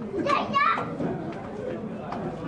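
A high-pitched voice calls out briefly about half a second in, then indistinct background chatter from several people.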